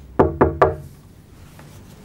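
Three quick knocks on a door, about a fifth of a second apart, each with a short hollow ring.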